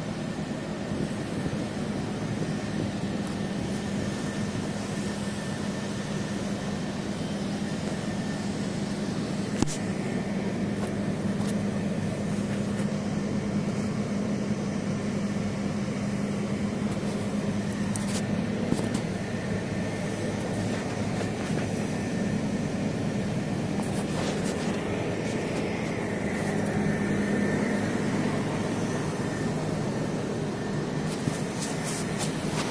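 A steady, engine-like machine hum, with a few light clicks along the way.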